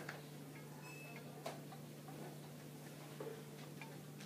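Quiet room tone: a steady low hum with a few faint clicks.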